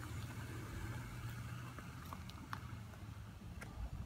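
A steady low hum, like a motor running in the background, with a few faint light clicks.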